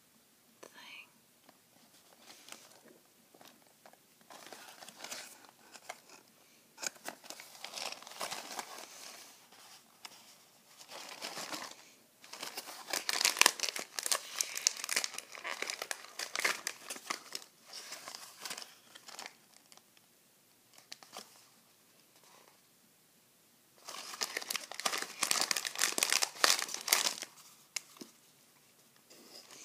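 Crinkly plastic snack wrapper being handled, crinkled and torn open by hand close to the microphone, in irregular bursts, with a long loud stretch in the middle and another near the end.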